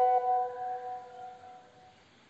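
A single bell-like chime, struck once at the start and fading away over about two seconds.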